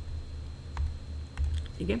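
A few faint, short clicks over a steady low hum, with a man saying "okay" near the end.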